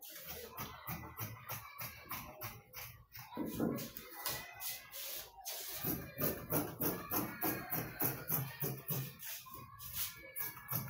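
Background music with a steady shaker-like beat, about three to four hits a second, over a low bass line.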